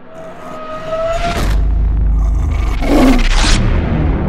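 Logo-sting sound effect: a low rumble swells under a brief steady tone, a swish follows about a second and a half in, and a louder rushing whoosh peaks around three seconds in, then fades.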